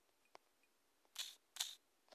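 Faint sounds of a phone being handled. A light tick comes early on, then two short scuffs about half a second apart, as fingers work the touchscreen.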